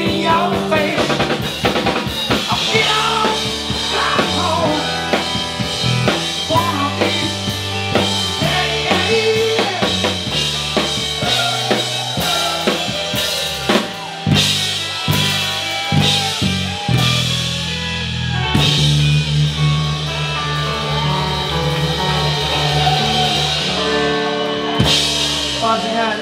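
Live rock band playing loudly, with electric guitar, keyboard and a drum kit, the drums prominent with heavy hits.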